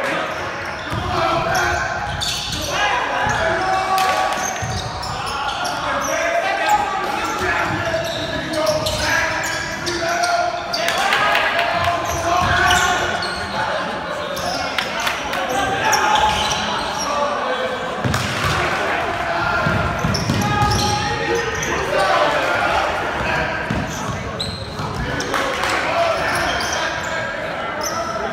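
Live sound of a basketball game in a gymnasium: voices of players and people courtside echoing in the hall, with a basketball bouncing on the court.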